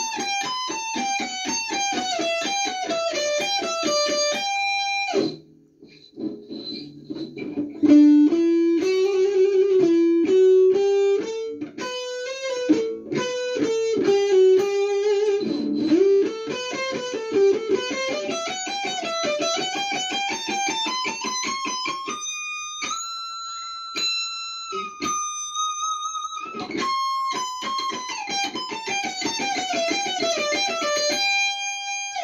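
Electric guitar playing a fast shred solo: rapid runs of single notes up and down the scale, with a short break about five seconds in and a long high held note about three quarters of the way through.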